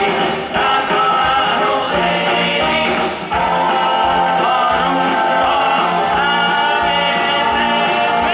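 Live rock and roll band playing, with a male lead singer singing over electric guitar and band.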